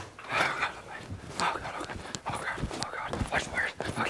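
A person breathing hard in irregular, breathy gasps, with scattered sharp clicks and knocks.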